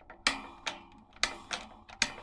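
Pull-string switch on a Star Patio electric patio heater clicking as the string is pulled: about four sharp clicks in two seconds, each with a short ring.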